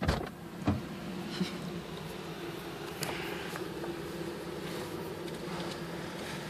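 A car's driver door standing open as the driver climbs into the seat: a sudden jump in noise at the start, a thump under a second in and a few small knocks, over a steady low hum.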